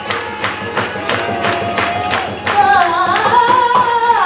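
Live Rajasthani folk music: a barrel drum keeps a fast, even beat, and about halfway in a voice enters with a long, ornamented, wavering line.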